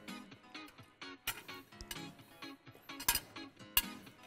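Quiet background music, a steady run of short plucked notes. A few sharp clinks of a fork against a plate come in the second half.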